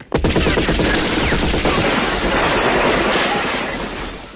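Automatic rifle fire: a long stream of rapid shots with no break, with glass shattering through the second half, then fading near the end.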